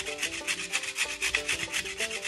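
A stick of chalk grated against a metal box grater: a fast, even run of dry scraping strokes, several a second, wearing the chalk down to fine powder.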